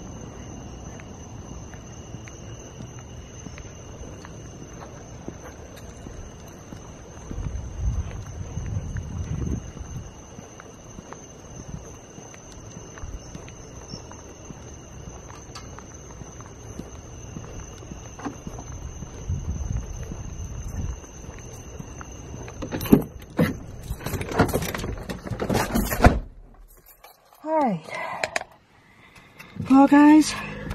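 Footsteps and handling rustle while walking outdoors at night, under a steady high-pitched two-tone drone. About 23 s in comes a run of loud clunks and knocks as a vehicle door is opened, someone climbs in and the door is shut, after which it goes much quieter.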